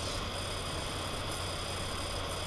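Steady background noise: a low mains-type hum under an even hiss, with no distinct events.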